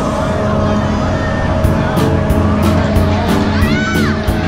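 Carnival fairground sound: a loud, steady machine hum and rumble under crowd voices, with music joining about a second and a half in, its beat about three strokes a second.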